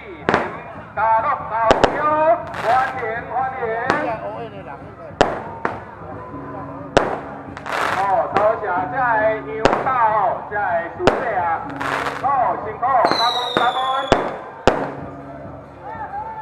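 Firecrackers going off as scattered single sharp bangs, about one every second or two.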